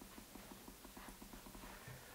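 Faint rapid ticking, about nine ticks a second, over a low hum: a camera lens's autofocus motor stepping while it hunts for focus.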